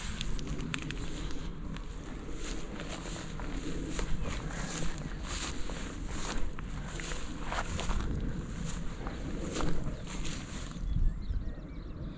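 Footsteps swishing through long, dry grass, an irregular run of rustles and brushes over a steady low rumble.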